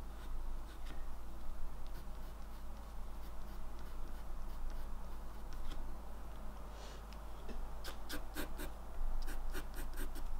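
Graphite pencil scratching across watercolour paper in short sketching strokes, with a quick run of strokes near the end.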